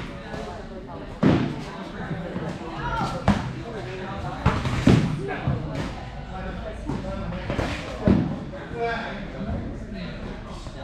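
Foam boffer weapons striking shields and bodies in sparring: four dull thuds, one or two seconds apart, with voices in the background, echoing in a large hall.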